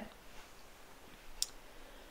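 Quiet room tone with one brief, faint click about one and a half seconds in.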